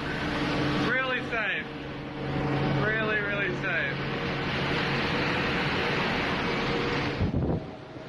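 Phone recording aboard a livestock carrier taking on water in a storm: a loud steady rush of wind and water over a constant low drone of the ship's machinery, with a man's voice briefly twice. A little after seven seconds the rush cuts off with a thump.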